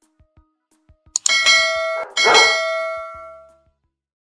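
A click, then a notification-bell sound effect rings twice about a second apart, each ring a bright metallic ding that slowly fades out, the second dying away near the end.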